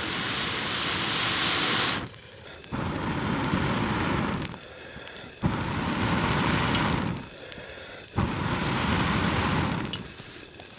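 Someone blowing hard on glowing embers to get twig kindling to catch, in four long breaths of about two seconds each with short pauses between. Each blow starts abruptly and rushes steadily until it stops.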